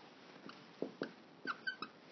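Dry-erase marker squeaking on a whiteboard in a few short strokes, starting about a second in.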